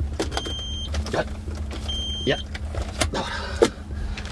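Key-in-ignition reminder chime of a 2003 Samsung SM520: a short, high electronic beep repeating about every second and a half, heard twice. It then stops as the key is pulled.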